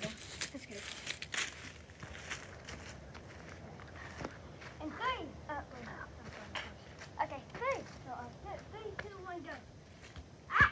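Footsteps crunching on dry leaves and grass, a few light steps about a second apart in the first seconds. Faint voices call out in short rising-and-falling bursts in the second half.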